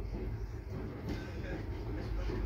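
Empty open-top coal wagons rolling past on the rails: a steady low rumble of wagon wheels and running gear, heard through a window.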